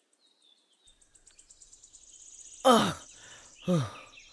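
A man's two short pained cries, about a second apart, each falling in pitch, as he is being beaten. Birds chirp steadily behind.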